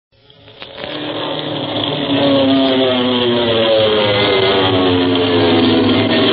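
A droning aircraft-engine sound effect mixed with music, fading in over about two seconds and then holding loud, its pitch sinking slowly.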